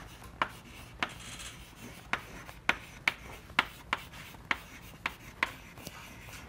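Chalk writing on a blackboard: a string of sharp, irregular taps as the chalk strikes the board with each stroke, with a short scratchy scrape about a second in.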